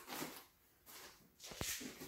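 A fabric tool bag being handled and packed: a few soft rustles, with a small sharp click about one and a half seconds in.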